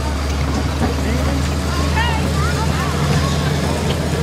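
Steady low engine drone of the vehicle towing a hayride wagon, with riders' voices calling out in the background about halfway through.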